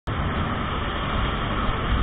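Bajaj Pulsar NS200 motorcycle at cruising speed: steady wind rush over the microphone with the engine running underneath.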